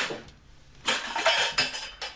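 Pots and pans clattering and rattling as they are shoved aside inside a low kitchen cupboard. There is a short knock at the start and a longer, louder clatter lasting about a second in the middle.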